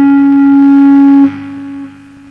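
A Fernandes Burny Telecaster-style electric guitar sustaining a single held note, which cuts off sharply a little over a second in and leaves a faint ring that fades.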